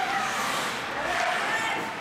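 Spectators shouting and cheering in an ice rink during a scramble in front of the net, over the rink's general noise.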